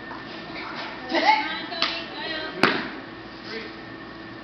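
Voices, loudest about a second in, then a single sharp smack about two and a half seconds in from a kung fu performer's strike during a tiger-style form.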